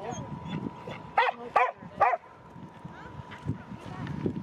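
Three short, loud animal calls about half a second apart, each rising and falling in pitch.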